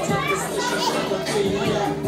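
Young children playing and chattering, with adults talking over them in a crowded hall.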